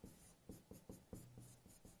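Faint, irregular short strokes of a pen writing on a board, a few scratches and taps as characters are written.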